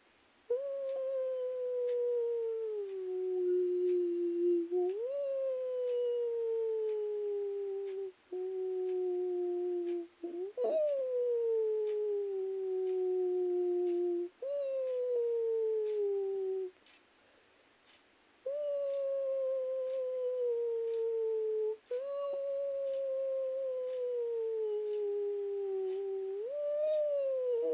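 Long, wailing howls: about seven drawn-out notes, each sliding down in pitch over two to four seconds, with short breaks between them and a longer pause past the middle.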